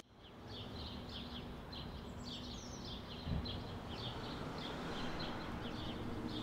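Faint evening outdoor ambience of small birds chirping: short, high chirps repeating several times a second, over a faint steady low hum.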